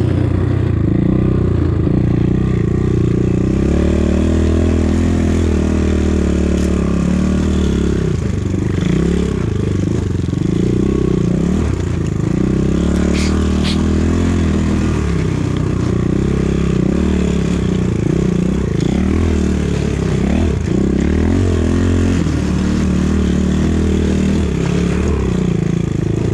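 250 cc enduro motorcycle engine running in first gear through snow, its revs rising and falling with the throttle. It is held in first because the broken gear-shift lever will not shift up to second.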